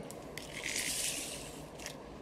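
A short rustling scrape of the diamond painting canvas and its plastic cover sheet being handled, with a light click before and after.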